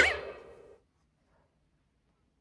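Tail end of a synthesized rising whoosh sound effect with warbling tones, fading out within the first second, then near quiet.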